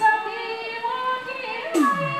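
Nepali Teej folk song: a woman's high voice singing over steady sustained harmonium-like tones. Near the end a hand drum comes in, its strokes sliding down in pitch, with a bright metallic splash on each beat.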